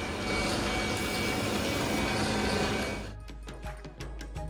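Steady noise of gem-cutting workshop machinery for about three seconds, then it cuts off and background music begins.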